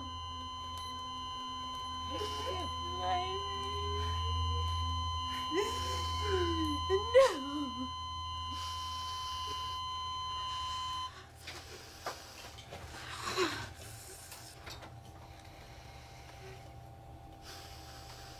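Patient monitor's continuous flatline alarm tone, signalling asystole (no heartbeat), holding one steady high pitch and cutting off suddenly about eleven seconds in.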